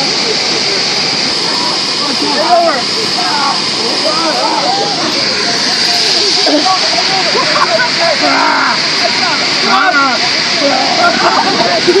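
Steady rushing noise of an inflatable bouncy castle's electric air blower, with people's voices over it.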